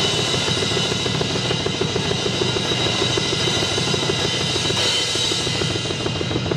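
Drum kit played with sticks in a fast, busy pattern: rapid strokes on the toms, snare and bass drum under continuously ringing cymbals.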